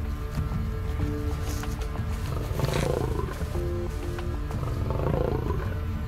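Lion roaring twice, a couple of seconds apart, over background music with sustained tones; a territorial call.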